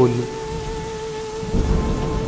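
Horror radio-drama sound bed: a held music drone note over a steady rain-like hiss, with a low thunder-like rumble building about one and a half seconds in.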